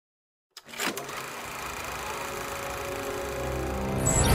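Film-projector sound effect: after a moment of silence it starts with a click and a short swell, then runs as a steady mechanical whirr that slowly grows louder.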